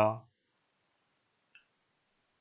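A man's voice trails off at the start, then near silence with one faint, short click about a second and a half in.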